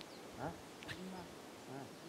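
Quiet open-air hush with a man's faint murmured voice coming and going and a couple of brief high chirps.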